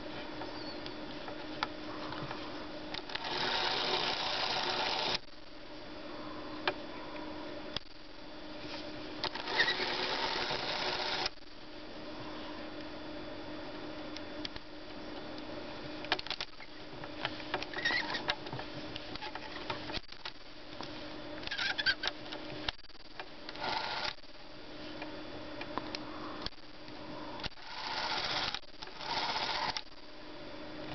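Spring-wound clockwork motor of a 1959 Bolex Paillard B-8SL 8mm movie camera running continuously with a steady whir, evenly and without faltering, a sign that the old motor still works. Fingers rub and handle the camera body and click at its switch, loudest in a few short stretches.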